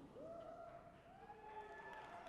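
Near silence: the room tone of a large hall, with faint drawn-out calls from audience members.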